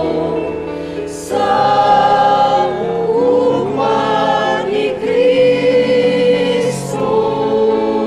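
Church choir singing a slow hymn in held chords over sustained low notes, a communion hymn sung while communion is given out.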